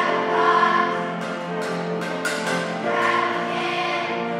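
Children's choir singing together in held notes.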